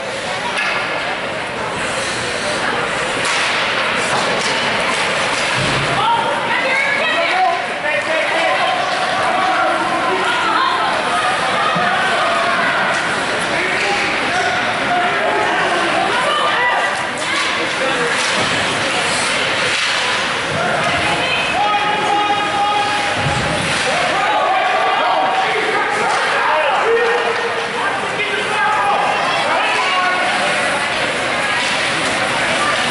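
Ice hockey game sounds: spectators talking and calling out throughout, with scattered sharp knocks of puck and sticks against the boards and ice.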